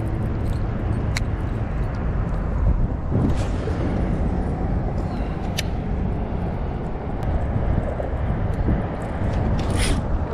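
Strong wind buffeting the microphone, a steady low rumble, with a few faint clicks.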